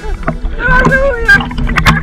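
A woman's voice at the sea surface, heard over water sloshing and slapping against a camera held at the waterline.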